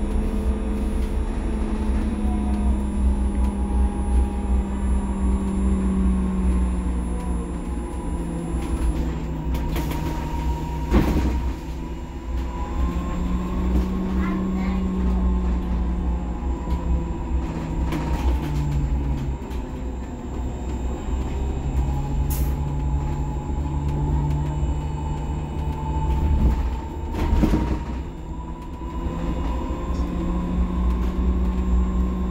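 Cabin sound of a SOR NS 12 battery-electric bus in motion: the electric drive whines steadily, its pitch drifting up and down as the bus speeds up and slows, over a low road rumble. A couple of short knocks come through, about a third of the way in and near the end.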